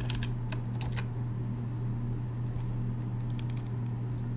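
Computer keyboard keystrokes: a few clicks in the first second as the command is finished and entered, then a sparser run of lighter taps near the end, all over a steady low hum.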